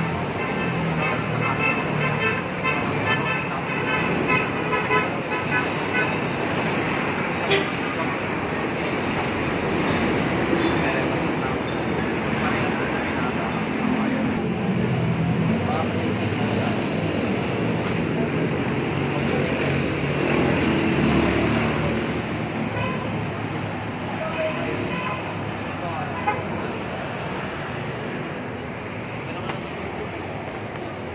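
Road traffic on a busy multi-lane street: motorcycles and cars passing with a steady rumble that swells and fades as vehicles go by. A horn toots on and off over the first few seconds.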